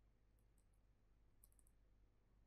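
Near silence: a few faint, short ticks from a stylus writing on a pen tablet, with a small cluster about a second and a half in, over a low steady hum.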